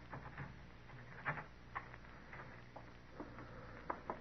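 Radio-drama sound effect of slow, careful footsteps on wooden boards: a faint, irregular series of soft knocks and creaks, the loudest a little over a second in, over the low steady hum of an old broadcast recording.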